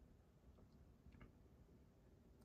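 Near silence: faint room tone with a few very faint ticks.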